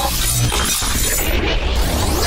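A glass-shattering sound effect laid over loud music with a heavy bass, as part of a logo intro.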